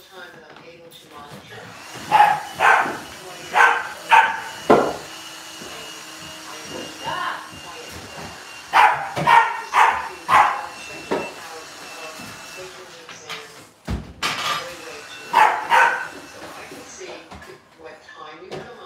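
A dog barking in three bouts of short, sharp barks, with a single heavy thud about fourteen seconds in as weight plates are pulled off a barbell.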